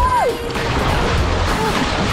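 Small sea waves washing in over rocks and splashing around wading feet: a steady rush of water, with music playing along with it.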